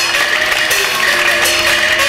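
Beijing opera instrumental accompaniment: a melody moving in held, stepped notes, with a few sharp percussion strikes.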